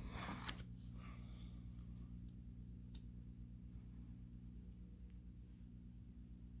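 Plastic binder page being turned, a brief rustle of the sleeve page in the first second, then a few faint ticks over a steady low hum.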